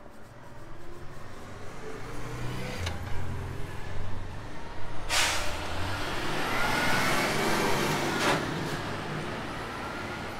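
Street traffic: a vehicle engine's low rumble builds over the first few seconds, and a loud hiss starts suddenly about five seconds in and lasts about three seconds.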